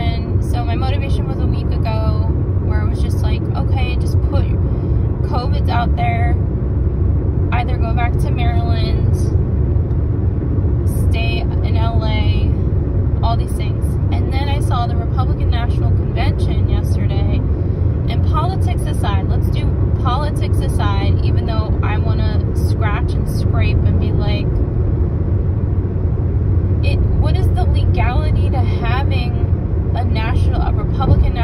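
Steady road and engine rumble inside the cabin of a moving Hyundai car, with a person's voice over it throughout.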